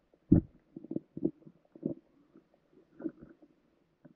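Low underwater thumps and knocks as a bass gulps down a bluegill swimbait close to the camera. One strong thump comes about a third of a second in, followed by a string of softer knocks over the next few seconds.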